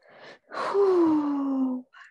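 A woman's short in-breath, then a long voiced sigh that glides down in pitch and lasts over a second.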